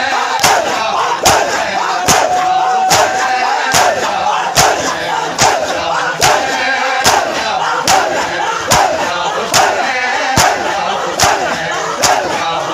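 Shia matam: a large crowd of men striking their chests in unison, a sharp slap roughly every 0.8 seconds, over the loud massed voices of the mourners.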